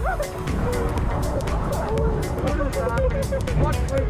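Riders yelping and shouting on a spinning roller coaster, over a steady low rumble of the cars on the track and the wind of the ride.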